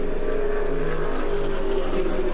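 NASCAR stock cars' engines droning steadily on track, heard through the race broadcast as several held tones that drift slightly in pitch.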